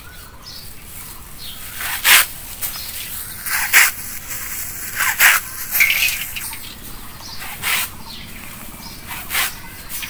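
A sickle blade cutting through a bundle of dry straw: a series of short, crisp crunches, about six of them at uneven intervals, with the straw rustling between them.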